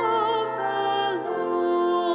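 The responsorial psalm sung as slow church music: a solo voice with vibrato over sustained organ chords, the notes changing about a second in.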